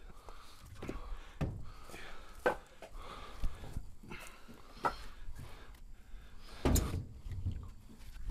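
Dry black locust firewood rounds knocking against each other and thudding down as they are pulled from a pickup bed and tossed out. The knocks are separate and irregular, about one a second, with the loudest cluster near the end.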